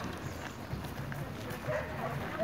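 Footsteps crunching on a gravel path as a group of people walks, with indistinct chatter from the group.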